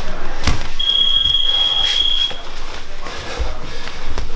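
A single steady high-pitched electronic beep about a second and a half long, over the thuds and scuffing of grapplers moving on mats.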